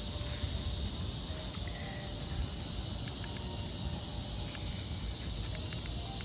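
Steady outdoor ambience: a continuous high insect drone and wind rumbling on the microphone, with a faint short beep about two seconds in.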